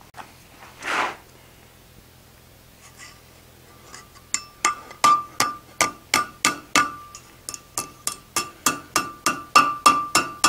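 Hand hammer striking a red-hot steel stem over the horn of an anvil, bending the forged leaf's stem into a curve. After a short rush of noise about a second in, the blows start a few seconds in and run at about three a second, each with a short metallic anvil ring.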